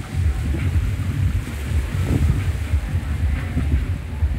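Wind buffeting the microphone: a loud, uneven low rumble that runs on without a break, with sea surf mixed in underneath.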